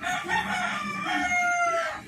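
A rooster crowing: a few short notes, then a long drawn-out final note that falls slightly in pitch.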